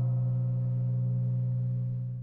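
A steady, low electronic hum added as a sound effect, held at one unchanging pitch with a buzzy edge.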